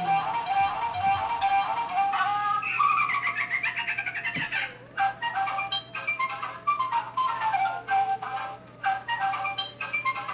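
Battery-operated novelty Halloween dancing hat playing its tinny electronic tune, with a synthesized singing voice over a bouncy melody.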